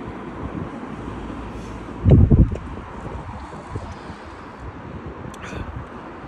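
Wind buffeting the microphone outdoors, a steady low rumble with one strong gust about two seconds in.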